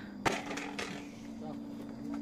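A single sharp knock about a quarter second in, followed by a few faint clicks, over a faint steady hum.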